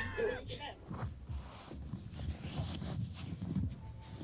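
A brief laugh, then faint, indistinct voices.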